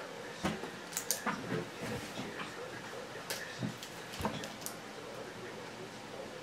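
Irregular light clicks and taps, about a dozen, bunched in the first five seconds, over a faint steady hum.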